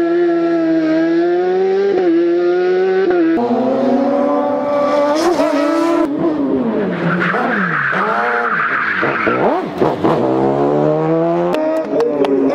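Silver Car S2 prototype race car's engine at high revs, its pitch climbing through each gear and dropping sharply at shifts and under braking, heard over several cut-together passes. A stretch of tyre squeal comes about seven seconds in.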